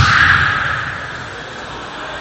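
Loud shouting in a large, echoing sports hall right after a kendo exchange, fading away within about a second and leaving a lower hall murmur.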